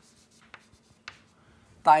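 Chalk tapping and scratching on a blackboard as a letter is written: two faint taps about half a second apart and a light scrape, before a man's voice resumes near the end.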